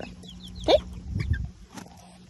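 Six- to eight-week-old chicks peeping in short, high, falling calls. A brief louder sound comes about three quarters of a second in, and a low rumble follows just after a second.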